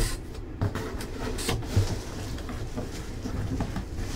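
Cardboard boxes being handled: a boxed replica helmet slid out of its outer cardboard box, with scraping and several light knocks in the first two seconds.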